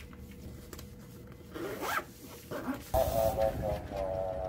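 Zipper of a fabric insulated lunch bag being pulled shut, in two short quick zips about halfway through. Near the end a louder, steady pitched sound cuts in abruptly.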